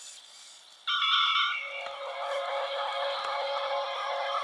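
Faint tape hiss, then about a second in a song's musical intro starts suddenly with held chords, played from a Teddy Ruxpin story cassette through the toy's own speaker with slightly distorted tape sound.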